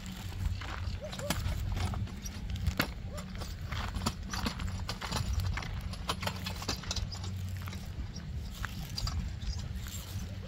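A loaded two-wheeled hand truck rattling and knocking irregularly as it is pushed over rough dirt and dry grass, over a steady low rumble.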